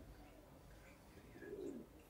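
Near silence: room tone in a pause of speech, with one faint, low, half-second coo about one and a half seconds in.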